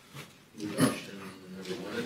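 Faint, indistinct speech, quieter than the speech around it.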